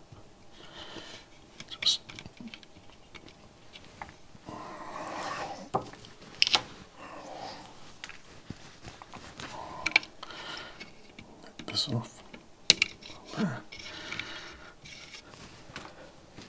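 Scattered small clicks, taps and rustles of electronic components and a stripboard being handled on a workbench, with a few sharper knocks and some low muttering in between.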